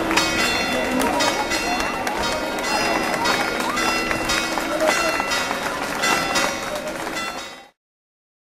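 Church bells pealing in quick, uneven strikes whose tones ring on, over the chatter of a crowd; the sound cuts off suddenly near the end.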